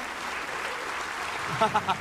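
Studio audience applause, with a burst of laughter starting near the end.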